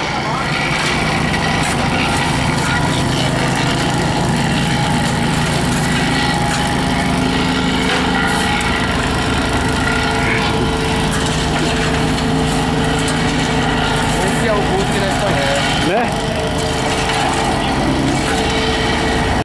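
A heavy vehicle engine idling steadily, with a low, unchanging hum.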